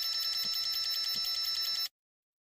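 Electronic buzzing sound effect: a steady, high, multi-pitched buzz with a fast pulse that cuts off suddenly near the end.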